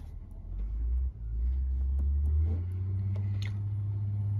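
An engine running at low speed, heard from inside the cab. Its steady low hum steps up in pitch and gets louder about half a second in and again about two and a half seconds in, as the revs rise.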